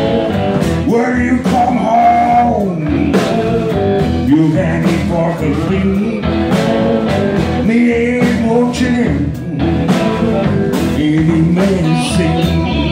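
Live blues band playing, with two electric guitars, electric bass and a drum kit keeping a steady beat.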